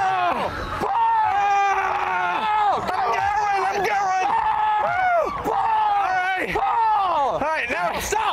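People yelling loudly: a string of drawn-out shouts, one after another, each dropping in pitch at its end.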